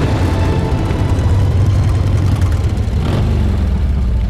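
Several motorcycle engines running together in a steady, loud low rumble.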